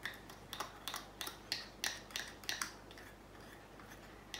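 A run of small sharp plastic clicks, about three a second, from small plastic pieces being handled and snapped in the fingers; they stop a little before three seconds in.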